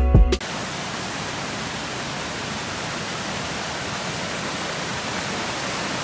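Background music cuts off a moment in, giving way to the steady rush of a rocky jungle stream cascading over boulders.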